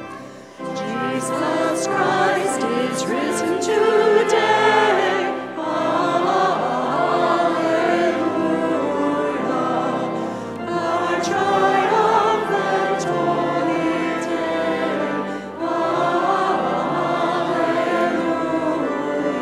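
A church choir singing a hymn in a reverberant church, in phrases of about five seconds with short breath breaks between them. It starts just after a held organ chord stops, about half a second in; this is the closing hymn after the dismissal of the Mass.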